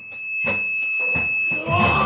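Live rock band in a quiet passage: sparse drum hits about four a second under a steady high-pitched ring, with electric guitar notes coming in near the end.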